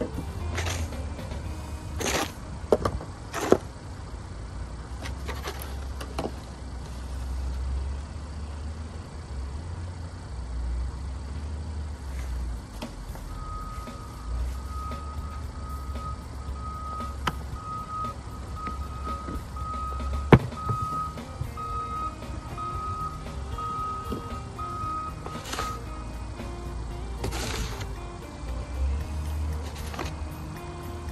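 Snow shovels scraping and knocking on packed snow, with a few sharp knocks, the loudest about twenty seconds in, over a steady low vehicle engine rumble. From about thirteen seconds in until about twenty-six seconds, a backup beeper sounds in a steady run of beeps.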